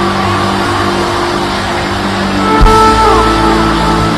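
Music with long held keyboard chords, over the noise of a congregation praying aloud. A low thump comes about two and a half seconds in.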